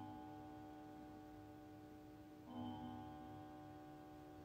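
A pendulum clock striking the hour, faint: one chime struck about two and a half seconds in, with the previous stroke's tone still ringing on. The strokes are part of the eight that mark eight o'clock.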